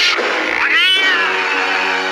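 Cartoon cat yowling: one cry, rising and then falling in pitch, about half a second in, over background music.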